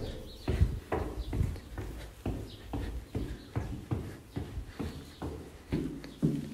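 Footsteps going down a flight of indoor stairs at a steady pace, about two steps a second.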